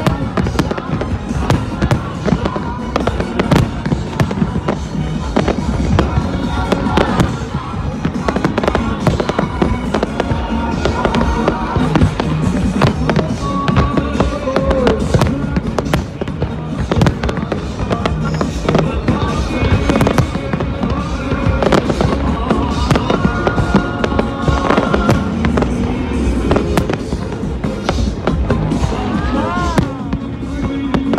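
Aerial fireworks display: shells bursting in quick, near-continuous bangs and crackles, with music playing underneath.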